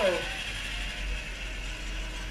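Small electric racing karts passing close by, a steady mechanical rattle of their drivetrains over a low rumble.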